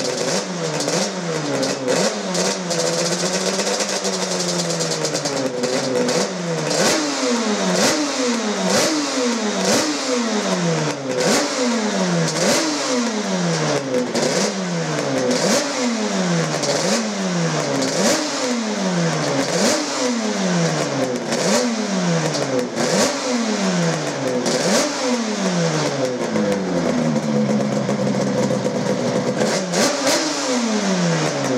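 Two-stroke engine of a Yamaha YZR500 replica race bike being revved over and over. Each blip rises sharply in pitch and falls back, about one every second or so, after a few seconds of slower wavering revs. It settles to a steadier idle near the end.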